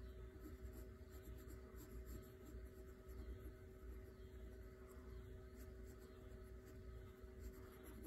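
Faint pencil scratching on drawing paper in short, irregular strokes as a small figure is sketched, over a faint steady hum.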